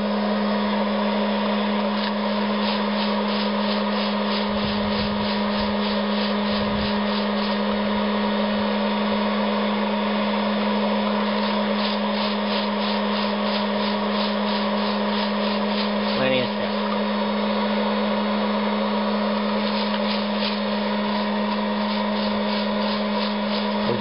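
900-watt hot-air popcorn popper running steadily with a constant fan hum, roasting green coffee beans. In several spells, the beans rattle and scrape in the tin-can chimney at about four strokes a second as they are stirred with a wooden spoon, because the popper's airflow is not yet strong enough to tumble the raw beans on its own.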